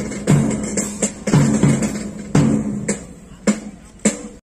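Marching band drums beating march time: a steady bass-drum beat with snare strokes, about two beats a second.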